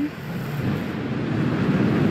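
Atlas V rocket's RD-180 first-stage engine running at ignition on the pad: a loud, deep rumble that grows steadily louder.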